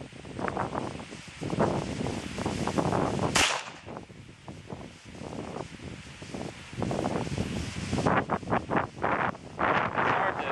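A single sharp pistol shot from a 1911 .45 ACP about three and a half seconds in, over irregular wind buffeting on the microphone.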